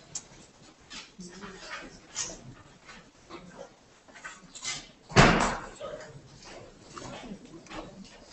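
Room noise in a hall between speeches: scattered small knocks and rustles with faint murmuring, and one loud thump about five seconds in that rings on briefly.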